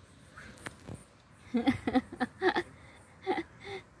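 A voice making several short, soft syllables, a run of them from about one and a half seconds in and two more near the end, with a faint click before them.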